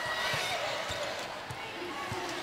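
Basketball being dribbled on a hardwood court, a bounce about every half second, over the murmur of an arena crowd.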